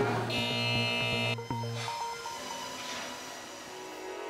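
A harsh electronic buzzer sounds for about a second, signalling that the build countdown clock has been stopped, followed by quiet background music.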